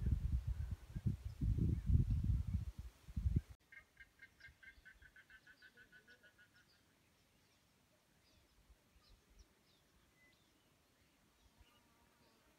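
Wind buffeting the microphone in irregular low gusts for the first three seconds or so. After a sudden cut, a bird gives a rapid series of short, evenly spaced notes that fades away within about three seconds.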